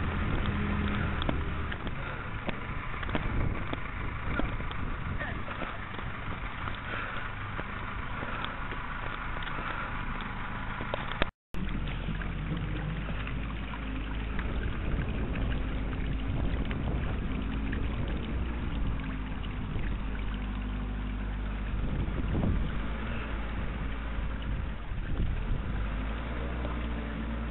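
Steady low running of a bulldozer's diesel engine at work, with wind rumbling on the microphone. The sound cuts out for a moment partway through.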